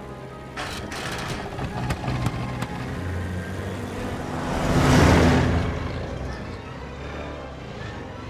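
Film soundtrack: orchestral music under the flying Ford Anglia's engine, which swells into a rush past, loudest about five seconds in, then fades away.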